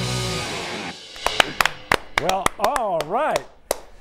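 A rock band's final chord on electric guitars, bass and drums rings out and dies away within about a second. Then a few people clap sharply and give excited whoops.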